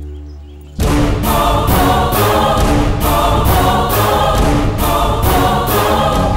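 Dramatic film background score. A low held drone gives way, about a second in, to a sudden loud choir-and-orchestra passage driven by a steady, regular percussive beat.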